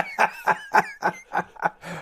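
A man laughing in a run of short, breathy bursts, about four a second.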